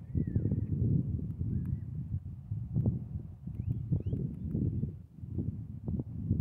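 Wind buffeting the microphone, an uneven gusty rumble, with a few faint, short bird chirps early on and again around the middle.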